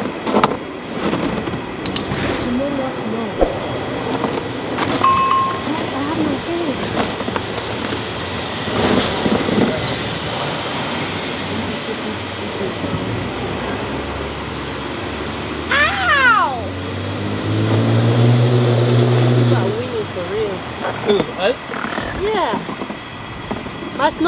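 Children and adults talking and calling indistinctly while playing in snow, with wind noise on the microphone. A child's high squeal about two-thirds of the way through, then a low hum that swells for a few seconds.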